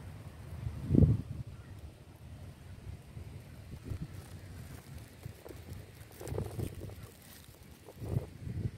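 Outdoor low rumble of wind buffeting the microphone, with a loud dull thump about a second in and a few softer knocks later.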